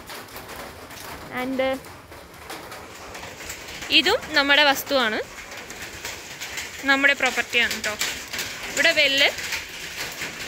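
A woman's voice in four short phrases with pauses between them.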